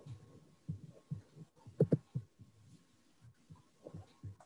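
Irregular low, muffled thumps, a few a second, with two louder ones close together near the middle, over a faint steady tone.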